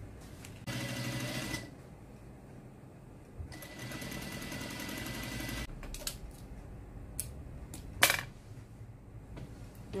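Brother industrial lockstitch sewing machine running in two short bursts of rapid stitching, sewing a zipper onto a cashmere strip, with a steady whine under the needle strokes. A few sharp clicks follow, the loudest a snap about eight seconds in.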